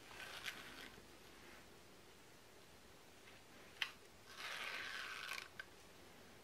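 Needle and thread drawn through a thread-wrapped temari ball while taking tacking stitches. The sound is faint: a light click, then a rasping pull of about a second, then a second small click.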